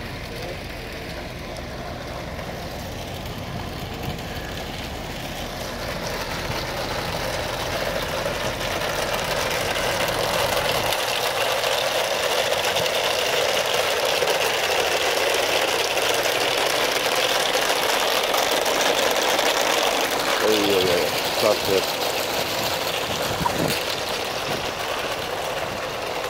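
Heavy rain falling: a dense, steady hiss that grows louder over the first ten seconds or so and then holds. A low engine hum runs under it until about eleven seconds in.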